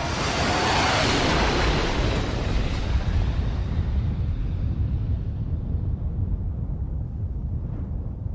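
Rushing roar of a jet airliner passing, with a steady low rumble underneath; its hiss dulls and slowly fades away.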